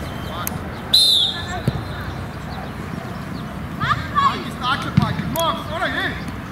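Children's high-pitched shouts and calls on a football pitch over a steady outdoor background hiss, with a brief sharp high cry about a second in and a burst of several calls near the end.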